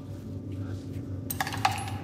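Low steady hum, then two sharp metallic clinks about a third of a second apart past the middle, after which a held tone sets in.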